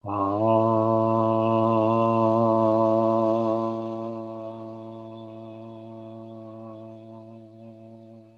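A man's voice chanting one long, steady 'Ah', the sounded syllable of Dzogchen Guru Yoga practice. It starts suddenly, holds loud for about three and a half seconds, then fades slowly as the breath runs out.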